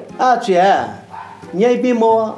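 A woman speaking in Newari in two short, animated phrases.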